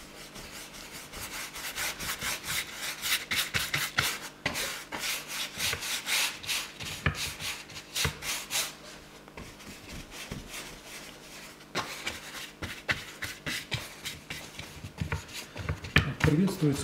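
Wide brush scrubbing watered-down texture paste across a stretched canvas in quick back-and-forth rubbing strokes, busiest in the first half.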